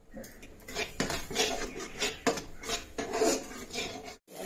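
Metal spatula scraping and clinking against a black iron kadhai in a run of quick, irregular strokes as thick melted jaggery syrup is stirred.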